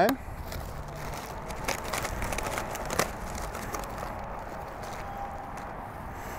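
Soft handling noises and a few faint clicks as gloved hands turn and lift tender racks of smoked spare ribs on a metal sheet pan, over steady low background noise.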